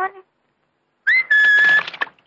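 A loud, shrill whistle: a short rising note, then a held high note lasting under a second.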